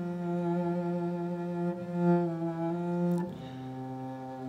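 Solo cello played with a bow: one long held note that gives way to a lower held note a little after three seconds in.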